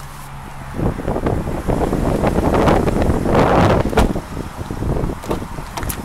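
Wind buffeting the microphone: a loud, rough rush that starts about a second in, is strongest in the middle and eases off near the end.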